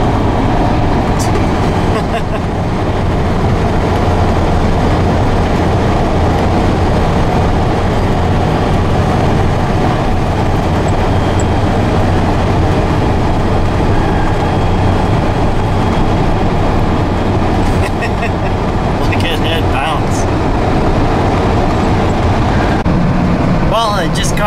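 Hino tow truck's diesel engine and tyre noise heard inside the cab at highway speed: a loud, steady low drone.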